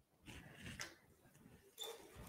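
Faint rustling of paper slips as a hand rummages in a plastic draw box, in two short spells.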